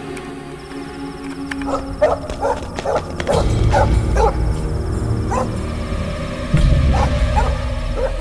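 A dog barking repeatedly over tense film background music. The music has deep low swells, one about three seconds in and another near the end.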